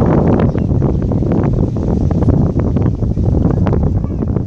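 Wind buffeting the phone's microphone, a loud steady low rumble, with many short crackles scattered over it.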